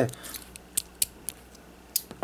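A few short, sharp plastic clicks, the last and loudest near the end, as fingers flick a red missile out of an SY knockoff Lego 1x4 Technic-brick missile shooter.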